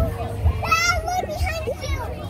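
Children's voices and chatter from a crowd, with one high-pitched child's voice standing out a little under a second in.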